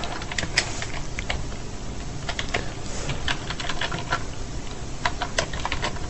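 Typing on a computer keyboard: irregular key clicks at uneven intervals, some in quick runs and some spaced out, over a steady low background hum.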